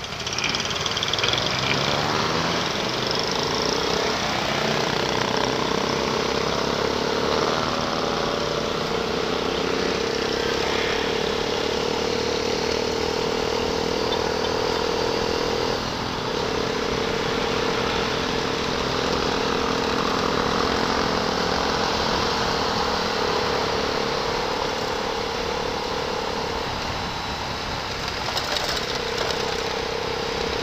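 Motorcycle pulling away from a stop, its note rising as it accelerates, then cruising with a steady engine note over wind and road noise. The note drops out briefly a few times.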